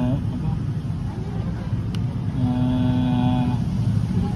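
Steady low engine rumble of a running motor vehicle. About two and a half seconds in, a single held tone lasts just over a second, and a sharp click comes shortly before it.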